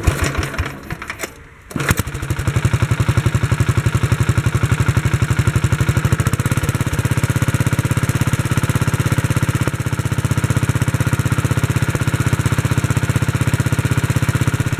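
The tractor's replacement Kohler K91 four-horsepower single-cylinder engine starts up: a few brief knocks, then it catches about two seconds in and runs steadily with a fast, even firing beat.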